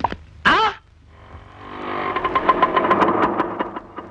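Motorcycle engine running with a rapid, even putter, growing louder from about a second in and fading away toward the end as it passes by.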